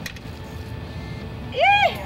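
Low background street rumble with a brief click at the start, then near the end a short, high-pitched vocal exclamation from a person, its pitch rising and then falling.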